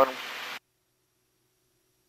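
Faint hiss of an open intercom/headset line that cuts off abruptly about half a second in, then dead silence: the voice-activated mic gate closing once the talking stops. No engine or propeller sound comes through.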